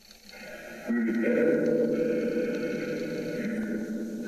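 Spirit box sweeping radio stations: near quiet at first, then about a second in a held, buzzing tone with hiss comes out of the box's speaker and slowly fades.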